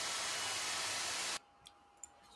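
Laptop fan driven by a modified RS-360 brushed DC motor running at full 8.4-volt power, giving a steady rushing hiss of air; it stops abruptly about one and a half seconds in. The motor is pulling so much current that one of its supply wires starts melting.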